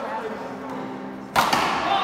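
A paddleball paddle striking the ball on the serve: one sharp crack about one and a half seconds in, ringing on in the large hall.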